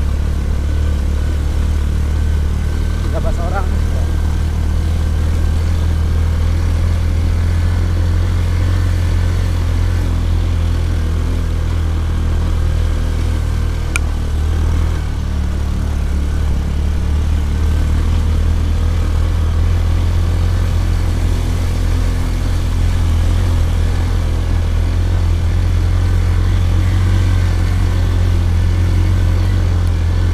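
Small motorcycle engine running steadily under load, a continuous low drone heard from on the bike as it climbs a dirt track, with a second motorbike following close behind. A single sharp click about halfway through.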